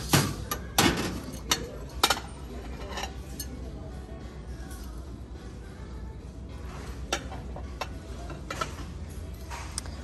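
Ceramic and glass dishes clinking and knocking as plates are set down and handled on a shelf: a cluster of sharp clinks in the first two or three seconds, then a few more near the end.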